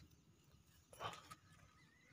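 Near silence, with a brief faint rustle of grass and leaves about a second in as a hand moves through the undergrowth.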